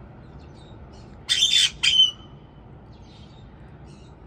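White-bellied caique giving two loud, harsh squawks in quick succession about a second in.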